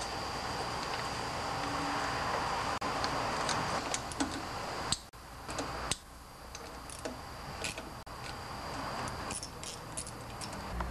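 Light clicks and metallic clinks of a plastic flywheel cover being fitted onto a Briggs & Stratton Vanguard V-twin engine and its centre screw driven in with a hand tool. The clicks come mostly in the second half, over a steady hiss.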